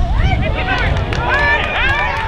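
Several football players shouting overlapping calls to each other across the pitch, over a low wind rumble on the microphone.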